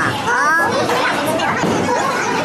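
Voices in a busy bowling alley: a high, gliding cry in the first half second, then a steady babble of chatter and hall noise.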